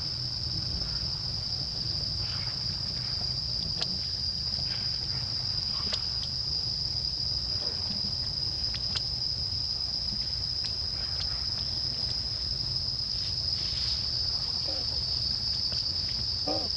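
Steady high-pitched drone of insects, unbroken throughout, over a low background rumble, with a few faint scattered clicks.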